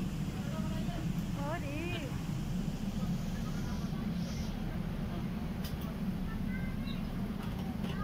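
Steady low rumble of an airport apron shuttle bus running, heard from inside its passenger cabin, with voices talking in the background about two seconds in and again near the end.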